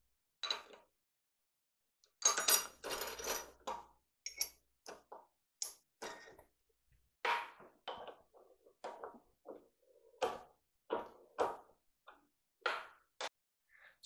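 Scattered metal clanks, clicks and knocks from tooling being handled and fitted at a Bridgeport milling machine, with a busier run of clatter about two seconds in. There is no steady motor or drilling sound.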